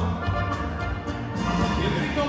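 Live dance-band music playing, with a strong, steady bass line under sustained melodic notes.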